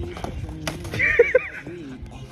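A skateboard's tail popping on concrete as a trick is attempted: one sharp crack a little after the start. It is followed by a louder wavering, whinny-like high sound, over background music.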